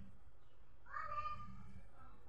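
A single high, drawn-out vocal call about a second in, lasting under a second, with the sound of a cat's meow.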